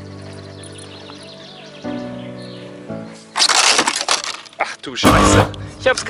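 Background music, then about three seconds in a loud clattering crash as a quiz panel on a link chain slips down and bangs against the log seating, with a second crash a little later. The noise is a racket.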